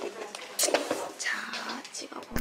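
A young woman's soft, puzzled humming and whispered vocalising ("eung?"), with a few brief handling clicks from the hand-held phone.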